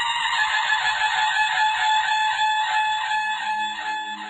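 A tutari, a long curved Indian brass horn, sounding one long sustained blast at a steady pitch that eases off slightly near the end.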